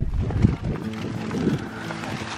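Wind buffeting the camera microphone in low rumbling gusts, strongest in the first half second and again around the middle.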